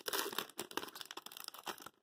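Foil wrapper of a trading-card pack crinkling and tearing as it is pulled open by hand, a dense run of crackles that cuts off suddenly near the end.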